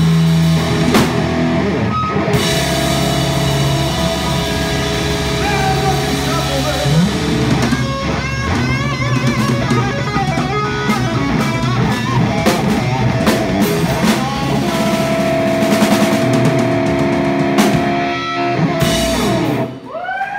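Live band of electric guitar, bass guitar and drum kit playing the drawn-out closing flourish of a blues-rock song: sustained ringing guitar chords over drum fills and cymbal crashes, ending on a final hit that cuts off just before the end.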